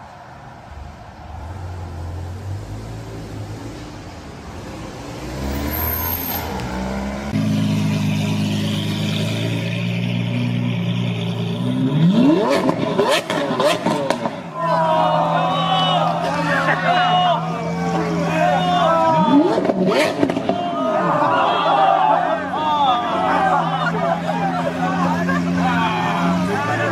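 Lamborghini Aventador's V12 idling with a steady low note, revved twice with a rising pitch and sharp cracks from the exhaust, while people's voices carry over it. Before it, a quieter car engine runs at low speed.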